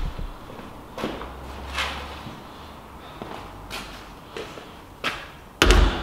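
Scattered light knocks from a large perforated stainless-steel false bottom being handled, with one loud, heavy thump a little before the end.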